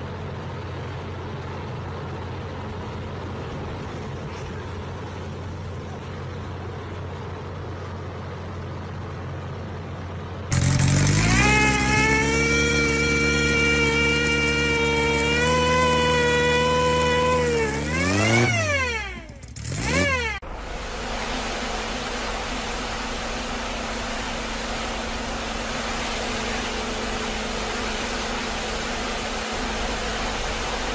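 A steady low machine hum, then a bare engine bursts into life and its pitch climbs to a high, steady run. It drops back, is revved up and down twice, and cuts off. After it comes a steady hiss of water spray from a pressure washer.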